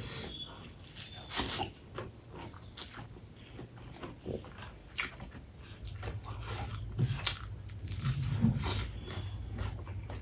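Eating by hand: rice squeezed and mixed with the fingers, and chewing with many short, wet mouth clicks and smacks.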